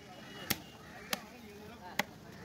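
A large knife chopping through cobia chunks onto a wooden log chopping block: three sharp chops, roughly two-thirds of a second apart.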